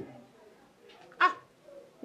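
A single brief, sharp, high cry about a second in, after a spoken phrase trails off at the very start.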